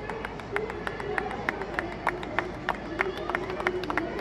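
Scattered applause: a few people clapping in irregular single claps for a dismissed batsman walking off, with faint voices in the background.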